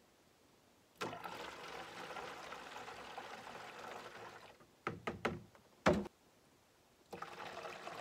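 Distilled water poured from a plastic measuring cup into the neck of a plastic gallon jug, a steady trickle for about three and a half seconds. A few sharp knocks follow, the loudest about six seconds in, and the pouring starts again near the end.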